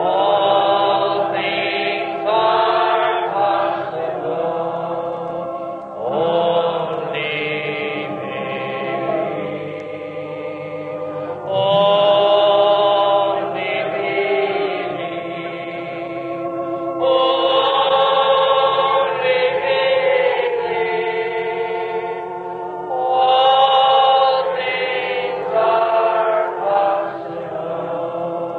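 A group of voices singing a slow hymn together in long held notes, phrase after phrase. The sound is thin and muffled, as on an old tape recording.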